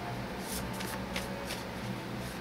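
Tarot cards being shuffled: a handful of soft, irregular flicks of card on card over a faint steady hum.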